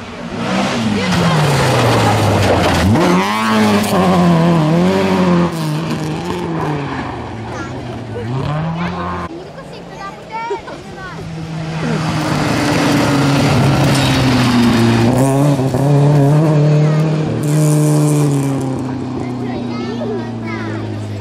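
A rally car's engine revved hard on a gravel stage, its note climbing and dropping again and again through gear changes and lifts, with a sudden break about halfway where a second run begins.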